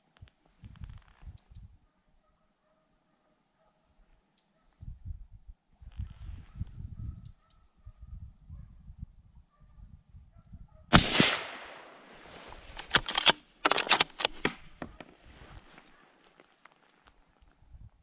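A single loud shot from a suppressor-fitted hunting rifle about eleven seconds in, with a ringing tail, fired at a deer that then lies down. A quick run of sharp clicks and knocks follows a second or two later, and there is low rustling of the rifle being handled before the shot.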